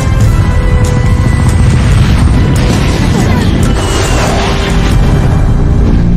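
Dramatic film score over a constant deep rumble, with several sharp booms of explosions around a jet aircraft.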